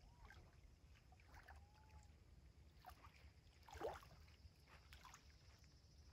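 Near silence: faint lakeshore ambience, with small waves softly lapping at the water's edge over a low rumble, and a brief, slightly louder sound about four seconds in.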